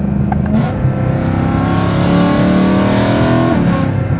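BMW car engine accelerating hard, heard from inside the cabin: the engine note climbs steadily for about three seconds, then drops off near the end as the throttle is lifted.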